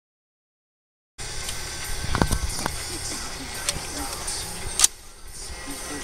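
Silence for about the first second, then outdoor background with faint voices of a group of people and a few short, sharp clicks; the sharpest crack comes just before the five-second mark.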